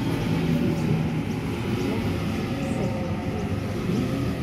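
Sydney Trains Waratah double-deck electric train moving along the platform, a steady rolling rumble of wheels on rail with a low motor hum.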